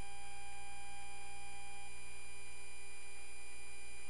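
Steady hum with a faint hiss under it, made of several unchanging tones; one mid-pitched tone stops about two seconds in.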